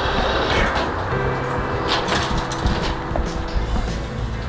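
Automatic sliding glass entrance doors, with a steady rushing noise and a few sharp clicks.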